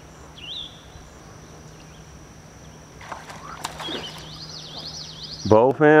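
Birds calling in woodland: short rising chirps, then a fast run of repeated high notes starting about four seconds in, over a steady high-pitched insect drone, with a few faint clicks a few seconds in.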